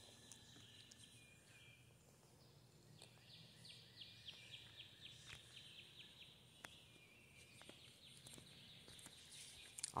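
Near silence of the woods, with a faint bird trill about three seconds in: a rapid run of short, falling high notes lasting a few seconds.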